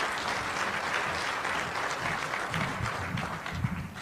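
Audience applauding, the clapping slowly dying away toward the end.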